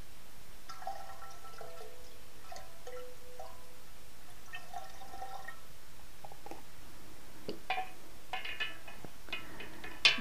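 A small stream of liquid poured into a glass carboy of wine, trickling with faint ringing notes that shift in pitch, followed near the end by a few light clinks of glass and the stirring spoon against the carboy neck.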